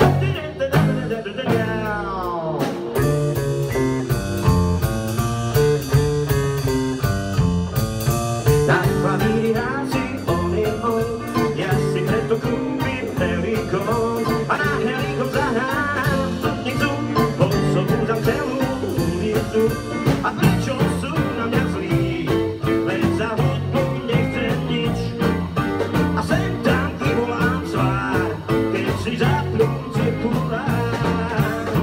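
Live band playing a bluesy number on electric guitar, bass guitar and drum kit.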